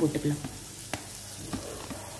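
Onion masala sizzling steadily in a nonstick frying pan, with a few light clicks partway through.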